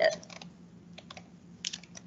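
Scattered light computer clicks, from a mouse or keyboard, as a web page is navigated. There are a few near the start, and a small cluster a little over one and a half seconds in.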